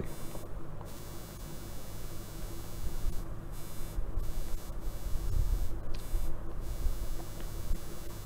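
A low, steady electrical hum with a faint hiss underneath: the recording's background tone, with no distinct events.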